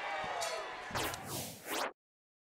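Cage-side fight-arena ambience with a few knocks, growing louder in the second second, then cutting off suddenly to silence just before the end.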